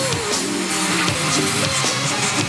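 Live band music in a hard-rock instrumental section: electric guitar and drums with no vocals.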